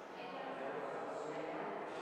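Indistinct chatter of several people talking at once, with no words clear.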